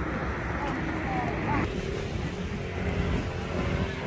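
Steady low outdoor background rumble with faint voices talking in the background during the first half.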